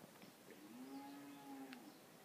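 Near silence: faint room tone. In the middle a faint, drawn-out pitched sound rises and then falls for about a second, and there are a couple of faint clicks.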